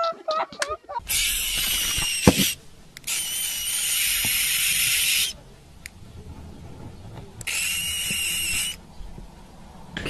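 An animal hissing: three harsh hisses, each one to two seconds long, with quiet pauses between them.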